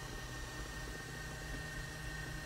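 Steady low background hiss with a faint low hum and a thin, high steady whine: room tone.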